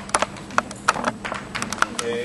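Footsteps on a hard floor: a quick, irregular series of sharp clicks as a person walks to the chalkboard.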